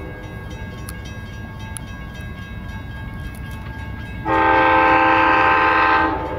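An Amtrak GE P42DC locomotive's Nathan K5LA five-chime air horn sounds a long, loud blast starting about four seconds in, over a low steady rumble.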